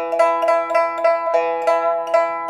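Pipa (Chinese lute) plucked, playing a Thai melody as a run of single notes about three or four a second, each note ringing on under the next.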